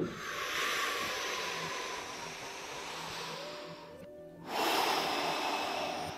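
A man taking two deep breaths close to the microphone, heard as a rushing of air: a long one of about four seconds, then a shorter one after a brief pause.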